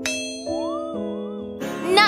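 A bright, metallic ding sound effect rings out at once and fades over about a second and a half. A short gliding tone slides up and wavers partway through. Sustained background music notes hold underneath.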